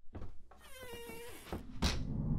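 A drawn-out, slightly falling squeal, then a sudden loud hit near the end that opens into a low rumbling drone: a horror jump-scare sting.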